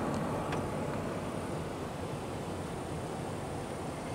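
Steady drone of a car on the move, heard from inside the cabin: engine and tyre rumble under a noisy hiss.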